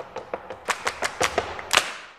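Short percussive music sting: a quick, irregular run of taps and hits, the loudest near the end, fading out.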